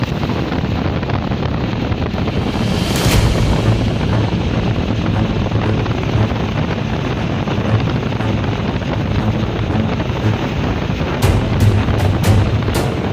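Wind rushing and buffeting on the microphone, a steady loud noise with music faintly underneath. Near the end a run of sharp knocks begins, several a second.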